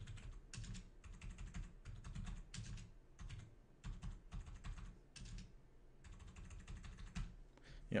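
Typing on a computer keyboard: runs of quick keystrokes separated by short pauses.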